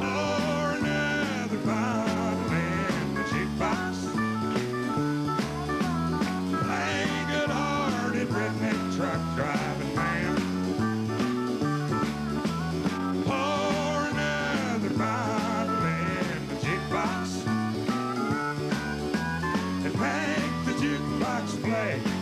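Live country-rock band playing a stretch without vocals: electric guitars with bending lead notes over bass and drums.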